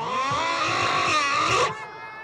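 Many children screaming together, loud and high, cutting off a little before the end.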